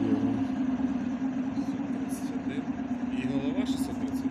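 Steady low hum of an ER9E electric multiple unit standing at the platform, its on-board machinery running at an even pitch.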